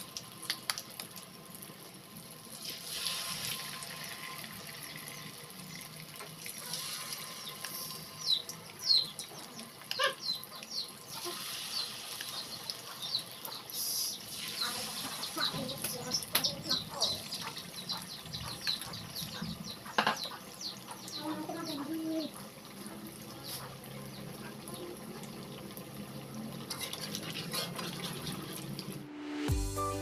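Battered banana slices deep-frying in hot oil in an aluminium wok: a steady sizzle with many small crackles and a few louder pops.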